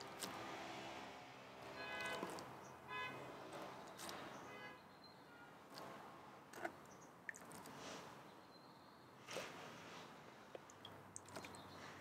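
Faint scraping and light water sounds of a trowel skimming dirty water off settled pond mud in a plastic tub, with a few small taps.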